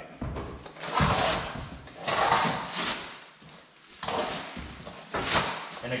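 Clear plastic stretch wrap being pulled and torn off cardboard-crated vehicle-lift parts, crinkling and rustling in about four bursts with short pauses between.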